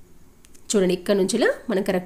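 A woman speaking. Her voice starts under a second in, after a short quiet stretch.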